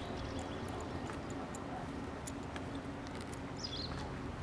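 Railway level crossing warning equipment sounding with the barriers down and the red light lit: a run of short, sharp clicks over a steady low hum. A short falling bird chirp comes near the end.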